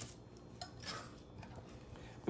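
Faint scraping and a light clink of a metal disher scoop working in a metal pan of stiffening praline candy.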